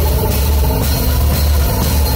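Live rock band playing loud, close to the drum kit: drums and cymbal crashes over a heavy low end and the rest of the band.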